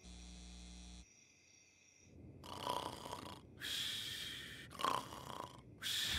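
A cartoon character snoring in his sleep: slow, regular snores about a second long each, starting about two seconds in.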